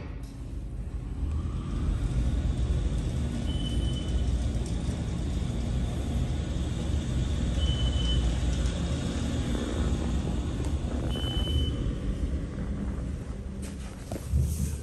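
2021 MEI traction elevator car travelling between floors: a steady low rumble and rushing hiss that build as the car speeds up about a second in and ease off as it slows near the end. Three short high beeps sound about four seconds apart during the ride.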